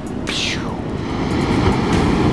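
Steady rush of ocean surf breaking on the beach, heavy in the low range, with a brief falling swish about half a second in.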